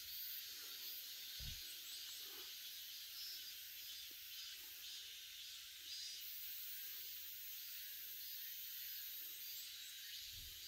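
Faint outdoor ambience in summer woods: a steady, high-pitched insect buzzing with no clear beat. There is a single soft low bump about a second and a half in.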